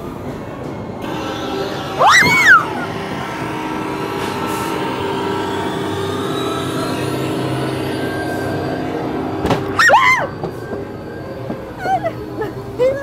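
Two short, high-pitched screams, about two seconds in and again near ten seconds, the first the loudest. Between them runs a steady droning haunted-maze soundtrack with a tone that slowly rises.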